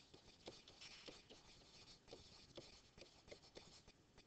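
Faint scratching and tapping of a stylus writing by hand on a digital writing surface, in short irregular strokes.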